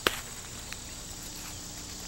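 Quiet steady background hiss carrying a thin, continuous high tone, with one sharp click at the very start.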